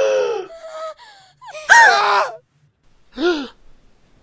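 Cartoon characters' voices gasping and crying out in alarm, several separate short cries without words. The loudest comes about two seconds in, its pitch jumping up then falling away, and a shorter cry follows near the end.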